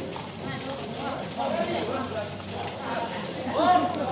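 Several people's voices talking and calling out, with a loud call near the end.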